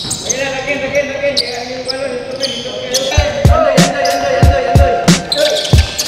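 Basketball being dribbled on an indoor court: a run of low thumps, about three a second, starting about three seconds in, with players' voices around it.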